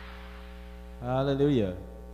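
Steady electrical mains hum on the audio feed, with a man's voice briefly sounding one drawn-out word about a second in, falling in pitch at its end.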